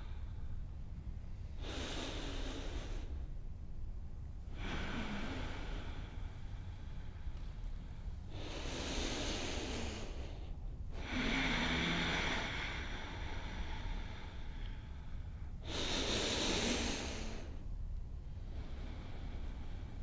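Slow, deep breathing: about five long, hissing breath sounds in and out, each lasting a couple of seconds, with pauses between them. A low steady hum runs underneath.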